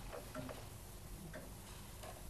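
A clock ticking faintly and slowly in a quiet room.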